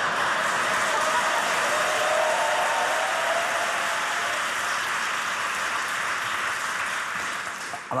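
Studio audience laughing and applauding in a steady wash of sound that eases off slightly near the end.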